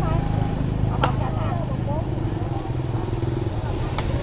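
A motorbike engine running steadily close by, with one sharp knock about a second in.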